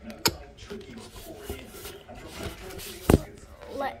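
Two sharp knocks from a handheld phone being handled while filming, one just after the start and a louder one near the end, over faint background voices.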